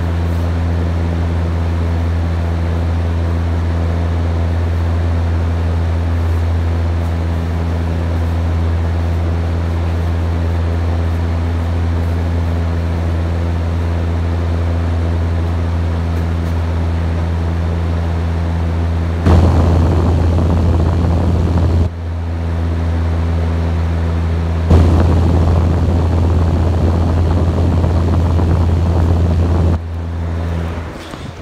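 A steady low hum with a few fixed overtones, with two stretches of louder rough noise over it: one about two-thirds of the way in lasting some three seconds, and one starting a few seconds later and running on until near the end.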